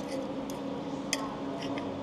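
Knife and fork cutting into a burger on a plate, with three short clicks of cutlery against the plate about half a second apart, over a steady low hum in the room.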